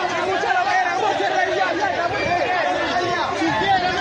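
Crowd of protesters, many voices talking and calling out over one another in a continuous dense babble with no single voice standing out.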